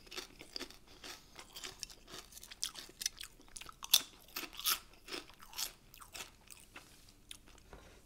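Close-miked chewing of crunchy chips: a steady run of crisp crackles, with a few louder crunches around three to five seconds in.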